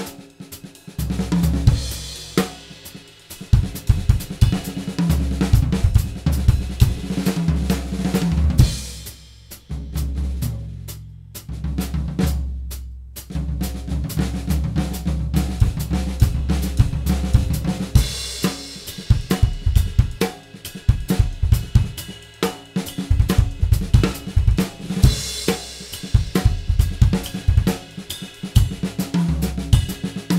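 Drum kit solo of kick drum, snare, toms and cymbals, played freely around polyrhythms. The playing thins out briefly about ten to thirteen seconds in, then comes back dense.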